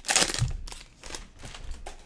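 Foil wrapper of a trading-card pack crinkling and rustling as it is torn open by hand, loudest at the start and then softer handling noise.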